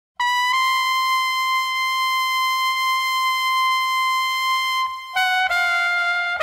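A trumpet holds one long, high note that scoops up slightly just after it starts. Near the end it moves to a lower note.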